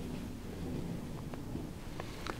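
Quiet room tone: a steady low rumble with a couple of faint clicks a little past the middle.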